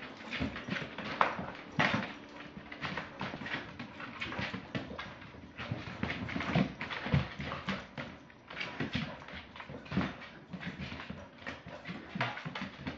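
A corgi's claws clicking and scrabbling on a hardwood floor in quick, irregular taps, with a few louder thumps as it darts about.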